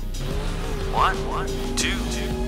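Background music with a cartoon monster-truck engine sound effect, as the truck drives up a ramp. About a second in there are two quick rising chirps.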